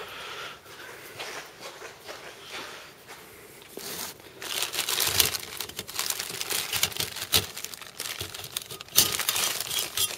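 Plastic packing bags crinkling and cardboard rustling as hands rummage in a cardboard box of parts. It is quieter for the first few seconds, then there is dense crackling from about four seconds in, loudest near the end.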